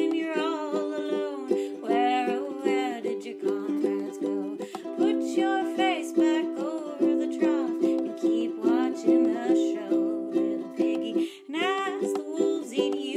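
Ukulele strummed in a steady rhythm in a small room, with a woman singing over it. The strumming breaks off briefly near the end, then picks up again with the voice.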